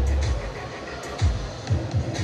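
Background music with a heavy bass beat, which thins out about half a second in to a few spaced bass hits.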